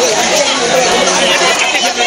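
Crowd chatter: many people talking at once, loud and close, with no single voice standing out.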